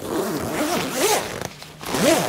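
Long zip on a camper-trailer annex door being pulled along its track, a continuous zipping whose pitch wanders up and down with the speed of the pull, easing off briefly near the end.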